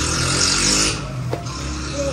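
A motor vehicle engine running steadily nearby, with a brief hissing noise over the first second.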